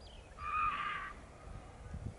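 A single drawn-out animal call lasting about two-thirds of a second, starting about half a second in, with a few faint short high chirps just before it.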